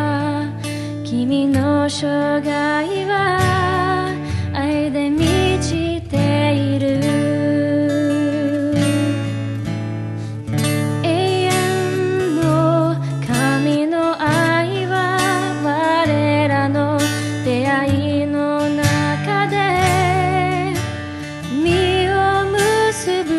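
A woman singing a hymn in Japanese with vibrato, accompanied by held instrumental chords.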